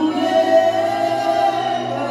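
A church congregation singing a hymn together without accompaniment, voices holding a long note, over a steady low hum.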